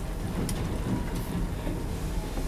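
Dry-erase marker writing on a whiteboard: a few short scratchy strokes about half a second in and a little after one second, over a steady low rumble.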